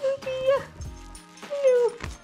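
A dog whining in greeting as it is petted: one held whine, then about a second later a second whine that falls in pitch.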